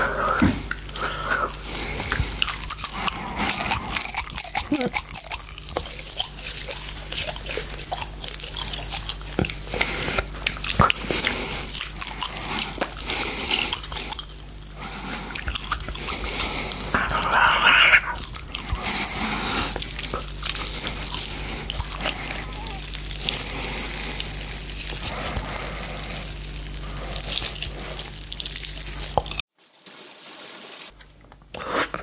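Close-miked mouth sounds of biting, licking and chewing a giant gummy candy: wet smacks, clicks and sticky tearing, irregular throughout. The sound stops abruptly near the end.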